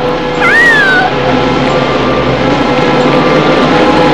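A single high cartoon cry that rises and falls about half a second in, over the film's background music, which carries on with a held note.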